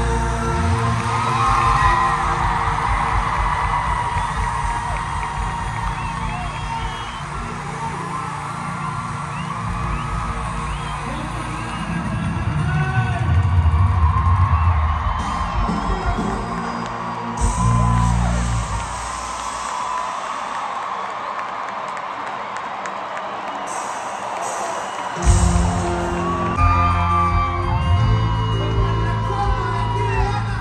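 Live norteño band music over an arena PA, heard from high in the stands, with the crowd cheering and whooping. The bass drops out for several seconds after the middle and comes back near the end.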